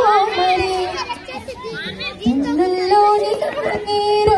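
Young children's high voices calling and playing for the first two seconds, then a woman singing into a microphone through a PA, her held notes climbing step by step from about two seconds in.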